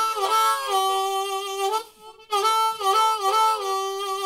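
Suzuki Harpmaster diatonic harmonica with brass reeds, played in two short phrases of chords with a brief break about two seconds in.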